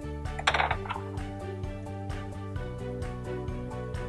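Background music with a steady beat. About half a second in, a brief metallic clatter as a snap ring is worked onto a torque wrench's one-inch square drive.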